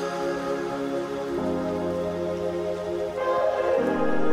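Background music of soft sustained synth chords, changing chord about a second and a half in and again near the end.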